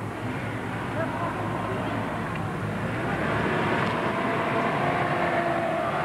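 First-generation Mitsubishi Pajero driving on beach sand, its engine and tyres growing louder about halfway through as the SUV approaches and passes close by.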